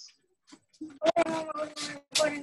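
A dog howling and barking: two loud calls, the second falling in pitch.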